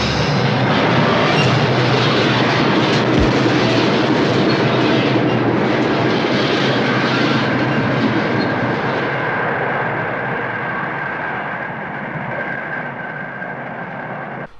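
Subway train running past on the tracks: a loud, steady rumble and rattle that slowly fades away over the last few seconds, with a faint high whine through the second half.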